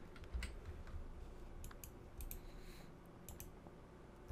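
A scattering of faint, irregular clicks from a computer mouse and keyboard as a URL is pasted into a web form.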